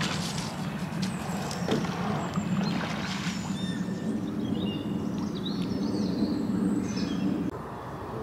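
Outdoor riverside ambience: a steady low hum with birds chirping now and then above it. The hum drops away near the end.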